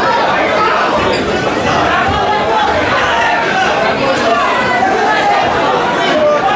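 Boxing crowd talking and calling out, many voices overlapping with no single voice standing out.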